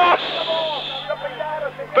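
Spectators in the stands shouting in reaction to a headed chance at goal from a corner; the noise of many voices peaks at the start and dies away over about a second, leaving scattered voices.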